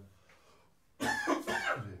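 A man coughing about a second in, a short cough in two quick bursts.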